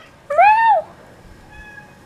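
A cat meowing once, a short call that rises and then falls in pitch, about a third of a second in.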